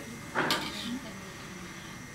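A spatula scraping once across a large wok of curry gravy, a short rasp about half a second in, over faint murmuring from people in the room.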